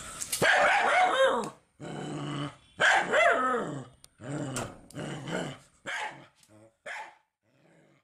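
A dog barking in a series of short pitched calls, the strongest in the first four seconds and weaker, shorter ones toward the end.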